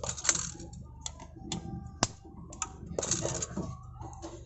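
Plastic clicks and rattles from a Mitsubishi Adventure side mirror's folding mechanism worked by hand as its coil spring is set under tension: about six sharp clicks, the sharpest about two seconds in, with short rattling bursts near the start and about three seconds in.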